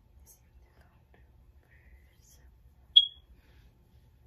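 A single short, high-pitched beep about three seconds in, loud against an otherwise quiet room, with faint brief hisses before it.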